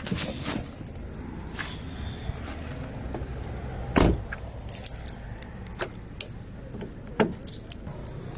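A car door being shut with a single loud thump about halfway through, followed by keys jangling and a few small clicks.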